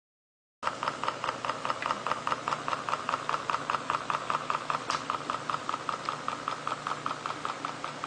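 Homemade battery-powered electric motor running, its rotor spinning inside a copper wire coil and making an even rhythmic clicking buzz of about five pulses a second. It starts suddenly about half a second in, with one sharper click near the middle.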